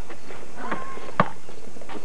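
A few sharp knocks on hard ground, spaced unevenly about a second apart, the loudest a little after the middle, over steady tape hiss.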